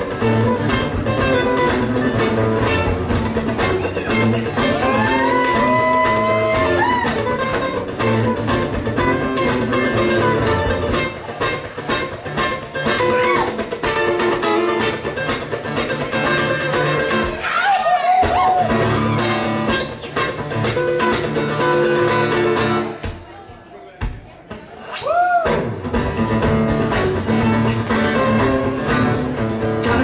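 Acoustic guitar played live with looped, layered parts: a steady rhythm under lead lines with a few sliding notes. The backing drops out about 23 seconds in, leaving a sparse moment, and comes back about two seconds later.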